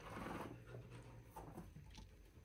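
Faint scuffling and patter of a chinchilla's paws as it leaps and scrambles over a wooden hideout block. This is popcorning, a chinchilla's playful jump. The loudest scuffle is in the first half second, with a few light taps later.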